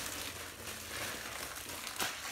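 Plastic packaging crinkling and rustling as it is handled and opened.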